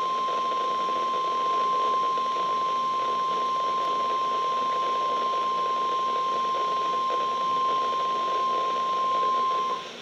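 NOAA Weather Radio warning alarm tone (1050 Hz) from a weather alert radio's speaker: one steady, unbroken high beep held for nearly ten seconds, then cutting off suddenly near the end. It is the signal that a warning message follows, here a severe thunderstorm warning.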